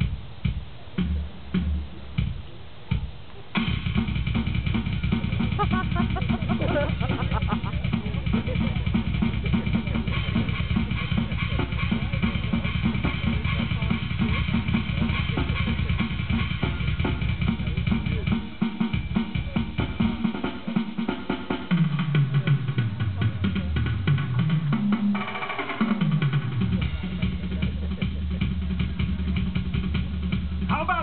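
Live drum kit solo: a few separate hits and fills, then from about three and a half seconds in a fast, unbroken run of drumming with bass drum and snare. Low sliding tones rise and fall under the drumming in the last third.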